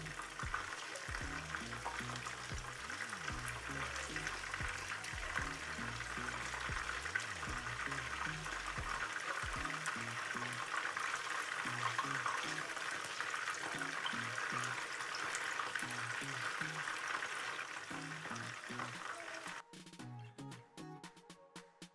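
Battered chicken pieces deep-frying in hot oil in a nonstick frying pan: a steady, dense crackling sizzle.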